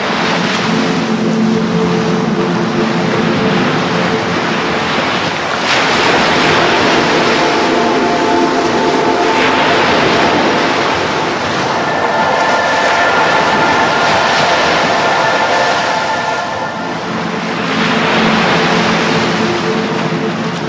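Ambient soundscape music: a steady, dense wash of noise with sustained drone tones underneath, the held notes changing pitch every few seconds.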